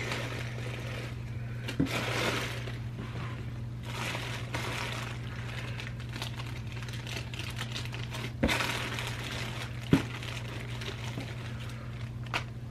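Plastic bags holding hair bows crinkling and rustling as they are handled and sorted, with a few sharp knocks, about two seconds in and twice near the end, over a steady low hum.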